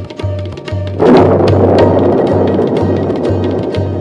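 Instrumental backing music for a children's song, with a steady bass beat about twice a second and hand percussion. About a second in, a loud rushing wash comes in suddenly and slowly fades under the beat.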